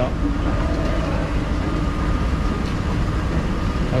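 Moving escalator running: a steady low rumble of its drive and steps with a faint steady whine, under faint background voices.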